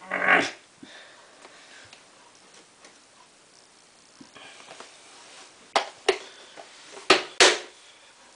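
A short breathy noise at the start, then quiet room tone, then several sharp plastic clicks and taps near the end from handling a detergent bottle and its dosing cap.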